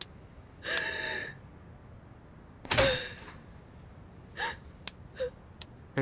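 A door being opened: a few sharp clicks and knocks from the handle and latch, with three brief pitched sounds. The loudest sound is a sudden knock about three seconds in.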